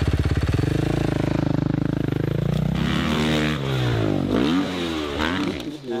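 Dirt bike engine running just after starting, revved so that its pitch climbs over the first two seconds and then rises and falls several times.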